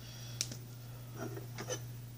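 A single sharp click about half a second in, as the cap comes off a Sharpie marker, over a steady low hum; a few faint soft handling sounds follow near the end.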